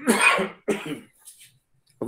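A man coughing twice in quick succession, a strong cough followed by a shorter, weaker one.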